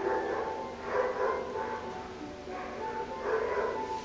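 Background music with held tones, over which a dog barks about five times, echoing in a kennel room.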